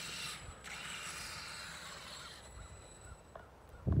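Electric RC monster truck (Traxxas X-Maxx) driving through snow, its drivetrain whirring, fading out about two and a half seconds in.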